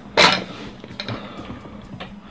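A brief rustle as a string of habanero peppers is pulled off over the head, then a few faint handling clicks.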